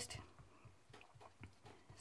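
Near silence with a few faint, soft taps: a small ink pad being dabbed against a wooden-mounted rubber stamp to ink it.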